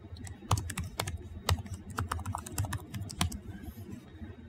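Computer keyboard typing: a quick, uneven run of key clicks as a password is entered, starting about half a second in and stopping shortly before the end.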